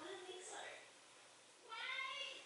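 A woman crying quietly, with a short high-pitched whimpering sob near the end.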